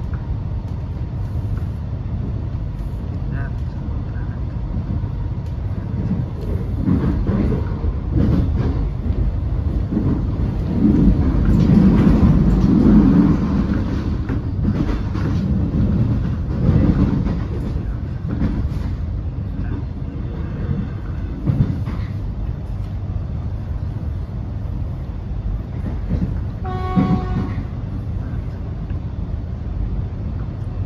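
Running noise heard inside an X'Trapolis electric suburban train: a steady low rumble of wheels on the track, louder for a few seconds around the middle. Near the end comes a brief pitched tone.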